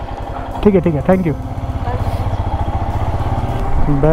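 Royal Enfield Himalayan's single-cylinder engine idling with a fast, even thump that grows slightly louder toward the end. A voice speaks briefly about a second in.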